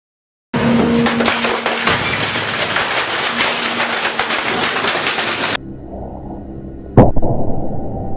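A loud, dense crackling noise for about five seconds that cuts off suddenly. About a second and a half later comes one sharp bang, the loudest sound: a CRT television's picture tube breaking.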